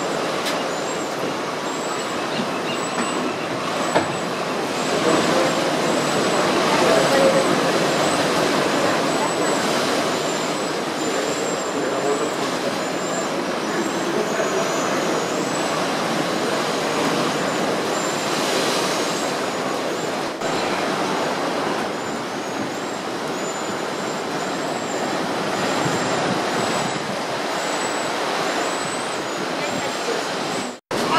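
Ocean surf breaking and washing over the rocks below the cave mouth: a steady, loud rush of water.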